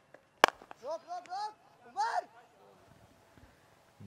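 Cricket bat striking the leather ball, a single sharp crack about half a second in, as the batsman plays a shot that goes for four. It is followed by several short shouted calls from voices on the field.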